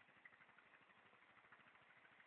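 Faint motorcycle engine idling, a soft, even run of rapid pulses barely above silence.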